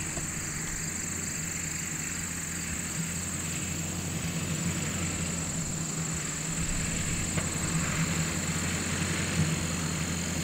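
An engine running steadily at idle, a low even hum, with a steady high-pitched insect drone over it.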